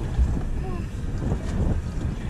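Wind buffeting the microphone on an open boat: a steady low rumble and rush of noise with no clear strokes.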